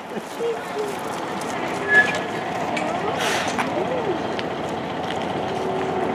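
Open-bench electric trolley car running slowly around a track loop: a steady rolling noise, with a brief high tone about two seconds in.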